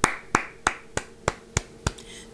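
One person clapping alone, seven steady claps at about three a second.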